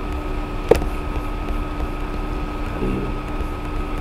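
Steady background hum and hiss from the recording, with a single sharp click about three-quarters of a second in.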